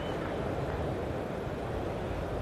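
Steady low rumble of cricket-ground ambience under a television broadcast, an even background noise with no clear single event.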